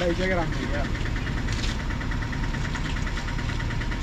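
John Deere 5039 D tractor's three-cylinder diesel engine running steadily, with a rapid, even clatter.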